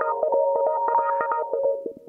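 Looped electronic music with the drums and bass gone, leaving a run of short, quick melodic notes with light clicks. The notes fade away near the end.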